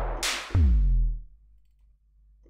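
Electronic trap drum-kit samples from the MDrummer drum sampler plugin, triggered one at a time: a sharp bright snare hit, then about half a second in a deep 808-style bass kick whose pitch falls as it rings out for most of a second.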